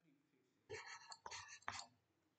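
Faint whispered speech: a few soft, broken syllables murmured under the breath in the middle of an otherwise near-silent moment.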